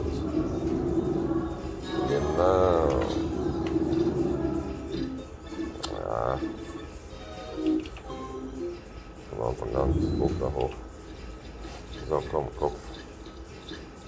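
Novoline Book of Ra slot machine's electronic game sounds: a steady tone while the reels spin, then short warbling melodic jingles several times as the book scatter symbols land, leading into the ten-free-spins bonus.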